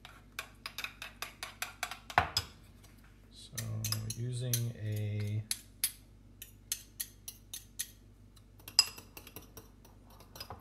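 A metal spoon clinking and scraping against a small ceramic bowl while stirring a creamy herb sauce, in quick light taps of about three or four a second. A short, low voice sound comes about four seconds in.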